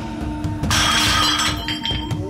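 A stack of roof tiles shattering under a karate chop: a sudden crash of breaking tile about two-thirds of a second in, lasting nearly a second, over background music.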